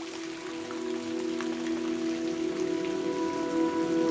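Rain recording with scattered drops and a soft hiss, mixed with ambient music of several sustained held tones. The whole gradually grows louder.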